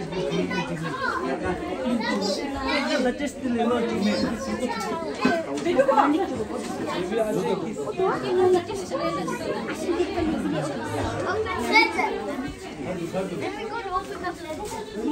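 Several people talking at once, a steady overlapping chatter of voices.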